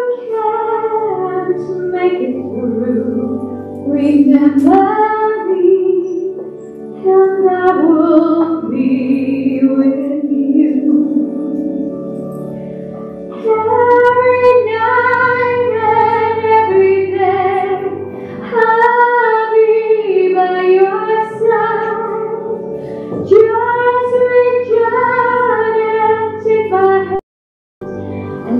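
A woman singing a slow hymn with sustained low accompanying notes beneath her voice. The sound cuts out briefly near the end.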